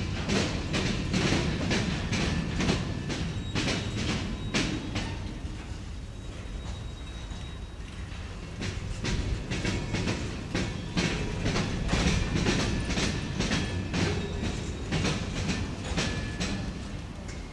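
Covered hopper cars of a freight train rolling over rail diamond crossings, their wheels clacking sharply and in quick runs as each set of wheels hits the crossing gaps, over a steady low rumble. The clacking thins out for a couple of seconds in the middle, then picks up again.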